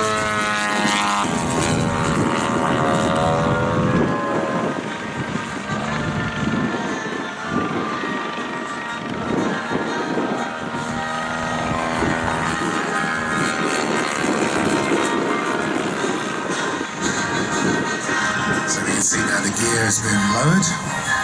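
Large-scale RC P-47 Thunderbolt's DLE-170 twin-cylinder petrol engine running in flight. Its pitch rises and falls several times as the model passes and the throttle changes. Music plays underneath.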